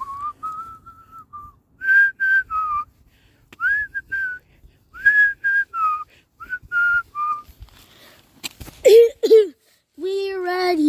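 A child whistling a tune, a run of short notes stepping up and down in pitch. A brief vocal sound comes near the end.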